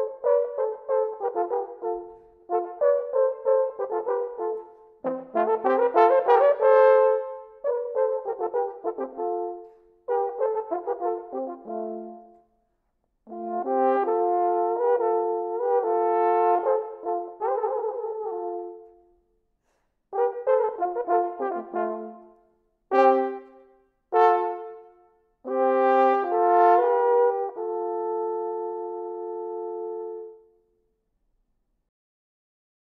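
A pair of 18th-century Hofmaster Baroque natural horns playing a duet in two-part harmony, in short phrases with brief pauses between them. Near the end come a few short detached notes, then the duet closes on a long held chord.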